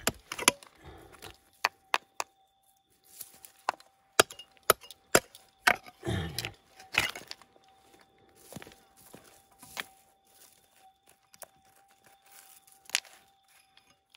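Pick hitting and digging into stony soil and bedrock: a run of sharp, irregular knocks, with a couple of longer scraping rakes about six and seven seconds in.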